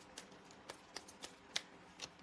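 A few faint, sharp clicks at uneven intervals, about six in two seconds, the loudest about a second and a half in.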